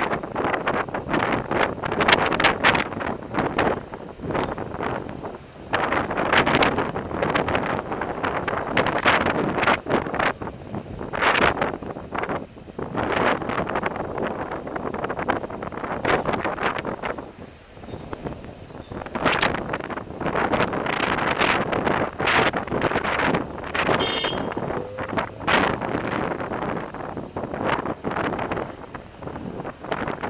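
Wind buffeting the microphone in irregular gusts, with a faint background of traffic. One brief high-pitched squeal cuts through about three quarters of the way in.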